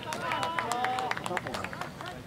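Football players calling and shouting to each other during open play, one call held for about half a second, with a scatter of short sharp knocks.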